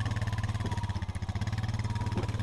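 ATV engine running steadily while the quad is under way, a fast, even pulsing at a constant level.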